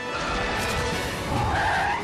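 Cartoon sound effect of a ball-shaped alien rolling and skidding fast over pavement, a noisy rushing rumble, over background music.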